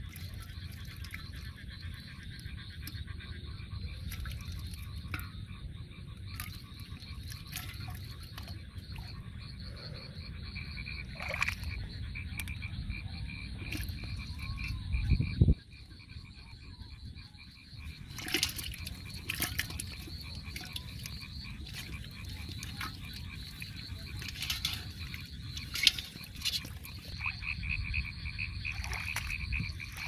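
A chorus of frogs croaking steadily in a fast, pulsing trill. Occasional sharp splashes and knocks come from handling the trap and fish in water, with one loud bump about halfway through.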